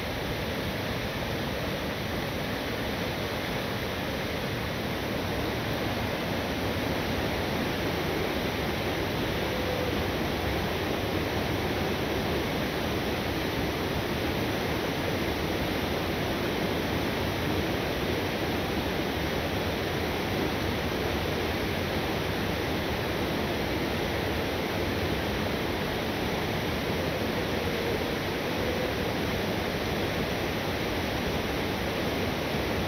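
A small river waterfall rushing steadily through a narrow rock chute: continuous loud whitewater noise, unchanging throughout.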